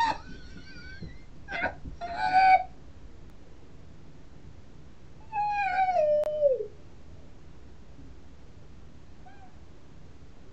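A high-pitched voice wailing in separate cries: short ones in the first three seconds, then a longer cry about five seconds in that slides down in pitch, and a faint short one near the end.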